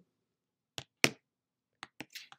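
Three short, sharp clicks of small plastic makeup packaging being handled, as a lip oil tube is set down and a lipstick picked up. The second click is the loudest.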